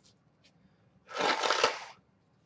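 A short rustle, a little under a second long, starting about a second in: trading cards and their packaging being handled.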